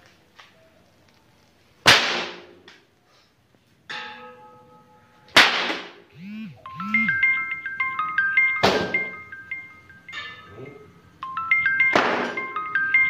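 Three sharp cracks of a 2.5-metre Ponorogo pecut (cemeti whip), a few seconds apart. A plinking tune of bell-like notes plays under the last few seconds.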